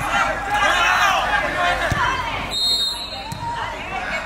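Several voices of players and spectators shouting and calling out across a soccer pitch during play, with a single thud of the ball being kicked about two seconds in.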